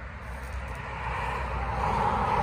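Road traffic: a car passing on a nearby road, its tyre and engine noise rising steadily as it approaches.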